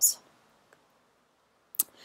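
Near silence broken by a single short, sharp click near the end, as the presentation slide is advanced.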